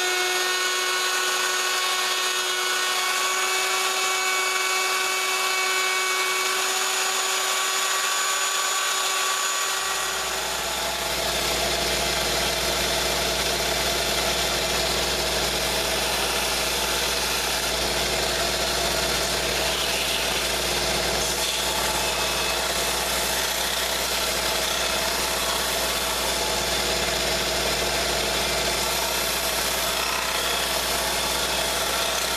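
Electric plunge router running steadily with a high whine as it routs a square wooden strip. About ten seconds in, this gives way to a bench belt sander running, with a deep steady motor hum under the rough noise of wood being sanded.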